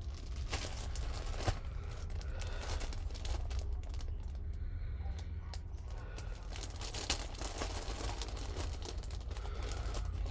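Clear plastic zip-lock bag crinkling as hands rummage through it, with small clicks of floss bobbins knocking together, in an uneven run of rustles.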